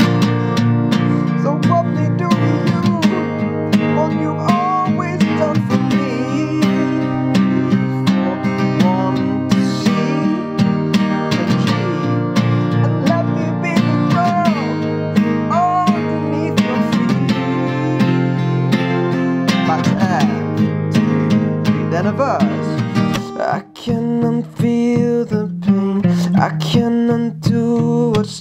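Acoustic guitar with a capo on the third fret, strummed in steady downstrokes through the chords G, Fsus, Am, C, G, Fsus, D, Fsus. There is a brief break in the strumming near the end.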